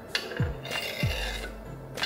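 Knife blade scraping cut raw corn kernels off a clear plastic cutting board into a bowl, two short scrapes, over background music with a deep repeating beat.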